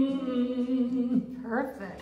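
A man's voice holding a long sung note through a handheld microphone, dipping slightly in pitch about a second in. A short rising voice sound follows near the end.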